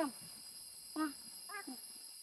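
A child's soft, faint voice answering in a few short syllables, over the steady high chirring of insects.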